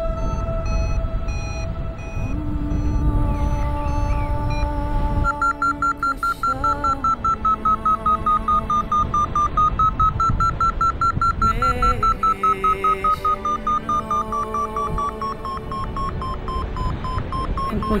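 A paragliding variometer sounding its climb tone: rapid beeps with a pitch that wavers up and down, the sign that the glider is climbing in lift. For the first few seconds, wind rumbles on the microphone. Music plays underneath throughout.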